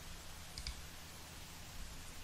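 A computer mouse clicking twice in quick succession about half a second in, over a faint low hum.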